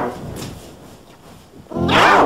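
Human voices put through the layered pitch-shift of a G Major edit, sounding distorted and animal-like: a shout trails off at the start, then a quieter stretch, then a loud yell begins near the end.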